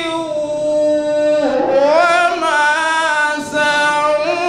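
A man reciting the Qur'an in a melodic, chanted style, holding a long note, then dipping and rising in pitch about a second and a half in before holding again, with a brief break near the end.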